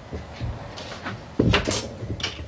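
Hand work on a wooden workpiece at a luthier's bench: a few short scraping strokes and wooden knocks, the loudest about one and a half seconds in.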